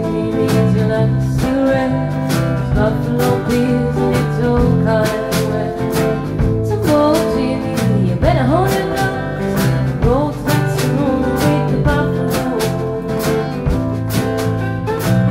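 A band playing an instrumental passage, with guitar, bass and drums keeping a steady beat. A lead line slides and bends in pitch around the middle.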